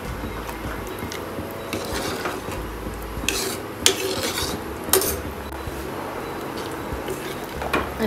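A ladle stirring rice, peas and water in an aluminium pressure cooker, scraping and swishing against the pot, with a few sharp clinks of the ladle on the metal in the middle.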